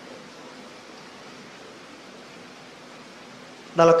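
A steady, even hiss of background noise with nothing else in it. A man's speaking voice comes back in near the end.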